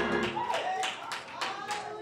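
Congregation clapping in a steady rhythm, about four claps a second, with voices over it. The accompanying music dies away in the first half second.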